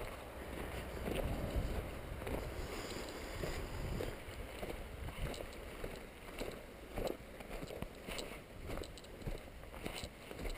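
Footsteps on a snow-covered road in an uneven series of soft steps, with low wind rumble on the microphone.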